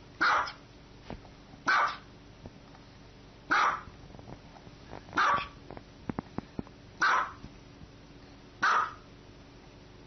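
A small dog barking six times, single short barks spaced about a second and a half to two seconds apart, with a few faint clicks between the barks around the middle.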